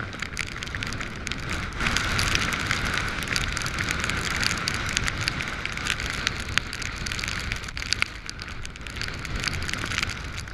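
Wind-driven rain hitting the camera and the hiker's waterproof: a dense stream of sharp drop impacts over a steady hiss, with wind noise rumbling on the microphone. The rain comes harder for a few seconds from about two seconds in.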